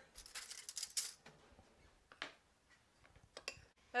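Spoon stirring dry cornmeal, sugar and salt in a ceramic bowl: a quick run of light scraping, gritty strokes in the first second, then a faint stroke and a few small clicks.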